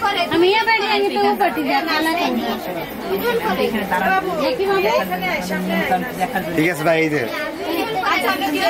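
Several people talking at once: lively, overlapping chatter of a crowd of voices.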